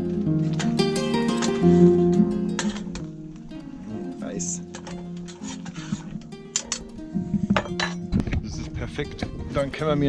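Background music with plucked-string tones fades down over the first few seconds, then a metal spoon clinks repeatedly against an enamel pot as it is stirred. A low rushing noise comes in near the end.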